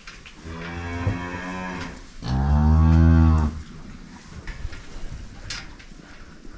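Dairy cow mooing twice: a shorter moo, then a longer, louder one.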